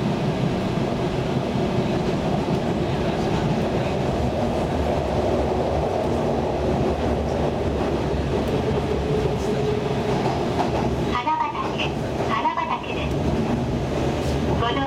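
Running noise of an electric train heard from inside the passenger car at speed: a steady rumble of wheels on rail. A person's voice comes in about three-quarters of the way through.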